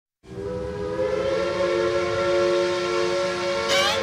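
Train-whistle sound: a sustained chord of several steady tones, with a bending glide near the end.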